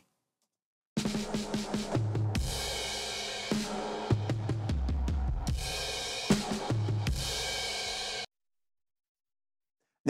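A music example with drums and bass notes plays through a pair of Eventide Omnipressor compressors set to multi-mono mode, so each channel is compressed independently. It starts about a second in and stops abruptly near the end.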